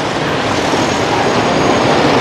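A large coach bus driving past close by, its engine and tyres making a steady, loud noise that swells slightly toward the end, mixed with the running of nearby motorbikes.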